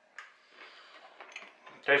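A man eating a forkful of spaghetti squash: a short click of the fork just after the start, then faint chewing noises with a few small ticks, and a spoken word right at the end.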